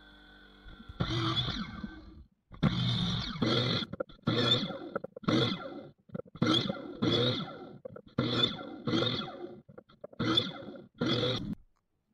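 Miter saw making a quick series of short cuts through small oak strips, about eleven brief bursts, mostly in pairs, with the saw falling silent between them.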